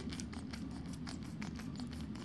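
Small Aquabeads spray bottle misting water onto the bead designs on their plastic trays, wetting the beads so they fuse together. It comes as a quiet, irregular run of short spritzes, several a second.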